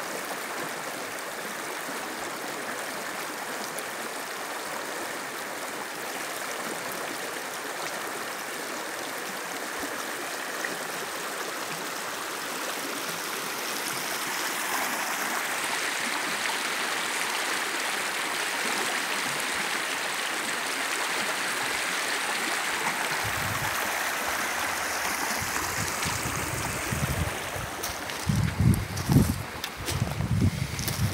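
Creek water running in a steady rush that grows a little louder about halfway through, with low irregular rumbles in the last few seconds.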